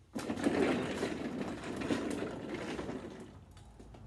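Wheeled office chair pushed away, its casters rolling across the floor for about three seconds, starting suddenly and fading out near the end.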